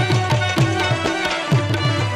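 Instrumental Pashto folk music: tabla played in a fast, steady rhythm, the low drum's strokes bending down in pitch, with rabab melody above.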